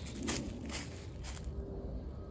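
Footsteps crunching through dry fallen leaves on a woodland path: several steps in the first second and a half, then quieter.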